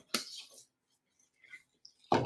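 A disposable rubber glove being pulled onto a hand: one short snap-like rustle at the start that fades within half a second, then near quiet with a couple of faint ticks.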